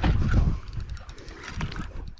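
Wind buffeting the microphone on a boat at sea, heaviest in the first half second, then quieter with a few faint ticks.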